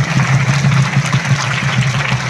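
A large group of schoolchildren and teachers clapping together, a dense patter of many hands, over a steady low hum.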